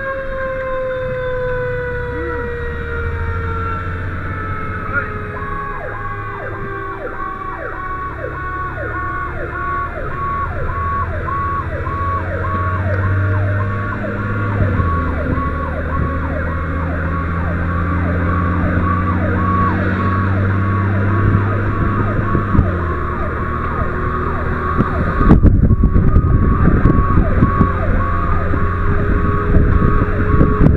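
Fire engine sirens heard from inside the crew cab while the truck drives on a call. A wailing siren slowly falls in pitch, and after about five seconds a pulsing siren joins it at about two pulses a second, over the low, steady run of the truck's diesel engine. From about 25 s a loud rush of wind noise takes over.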